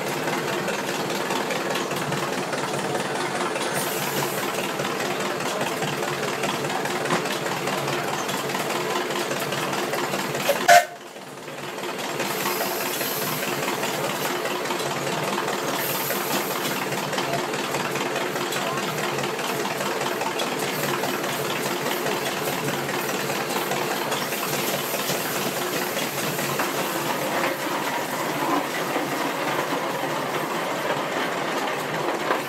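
1913 New Huber steam traction engine running steadily, its steam engine chuffing with a mechanical clatter. About eleven seconds in there is one short, loud sound, and then the sound dips briefly before the running resumes.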